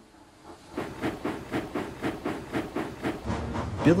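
Steam locomotive puffing, a steady run of about four chuffs a second that starts just under a second in.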